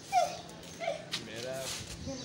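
Three brief vocal sounds, the first near the start and the loudest, with two shorter ones following in the pauses of a conversation.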